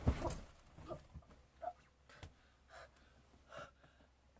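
A thump, then a girl's short gasps and breaths, about five of them spread over a few seconds.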